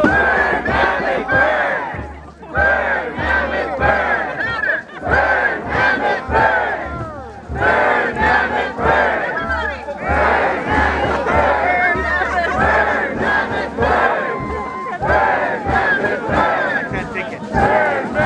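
A large crowd shouting and whooping together, many voices rising and falling, over a steady drumbeat of about two beats a second.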